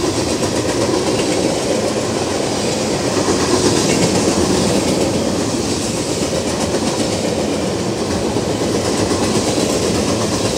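Freight train cars carrying open-top containers rolling past at speed, their steel wheels running on the rails in a steady, continuous rush of noise with faint repeated clicks. It is a little louder about four seconds in.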